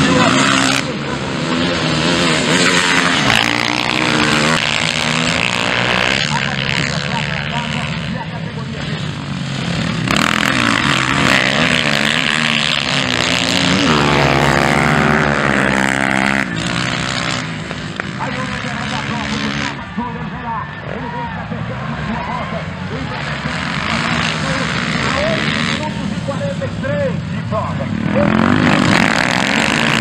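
Dirt bike engines revving up and down as motocross bikes race around a dirt track. The engine sound cuts abruptly several times and is quieter for a stretch past the middle.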